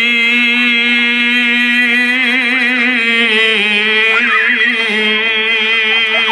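A male qari's voice through a microphone, holding one long sustained note of melodic Qur'an recitation (tilawah). The note is ornamented with wavering turns and dips slightly in pitch about halfway through.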